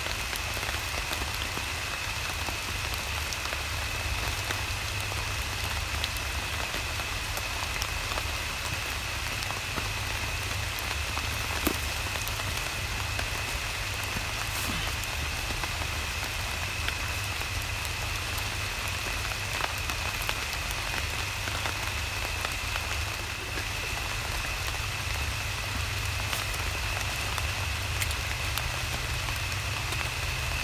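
Steady rain falling on a tarp shelter and the wet forest floor, with scattered sharper drips among the even patter.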